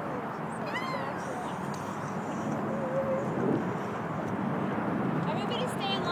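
Steady street traffic noise with people shouting and whooping without clear words: a high-pitched yell about a second in and a quick run of shouts or laughter near the end.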